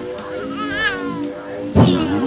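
Background music from a cartoon soundtrack with steady held tones. About half a second in there is a brief wavering, high-pitched vocal sound, and near the end a sudden loud burst of sound.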